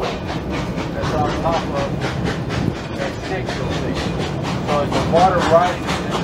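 Narrow-gauge steam train heard from an open passenger car: a steady, fast, even rhythm of clatter from the locomotive and the wheels on the rails, with passengers' voices over it.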